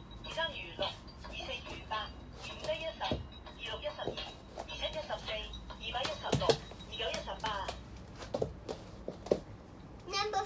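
A voice chanting the multiplication table in Cantonese from an electronic talking book's small, tinny speaker, over light music. A few sharp thumps from a child stomping on the floor cut through, the loudest about six and a half seconds in.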